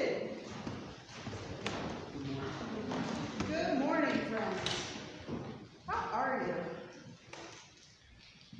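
Indistinct voices talking in a large, echoing church hall just after a choir's singing dies away, with a couple of light knocks.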